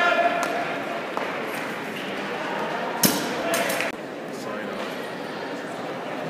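Echoing chatter and calls of people in a large indoor sports hall, with one sharp clack about three seconds in.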